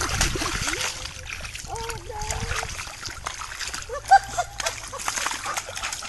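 Muddy puddle water splashing and sloshing irregularly as a dog rolls and wallows in it, with a person's voice calling out briefly twice.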